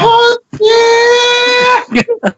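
A man's voice giving a short cry and then one long, high-pitched call held at a steady pitch for about a second, like a mother calling a name from a distance.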